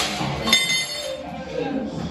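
A short metal bar clinks as it is set down, a sharp metallic hit about half a second in that rings briefly.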